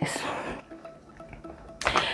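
A woman's breathy sigh fading out, then a quiet pause with faint background music and a breath in near the end.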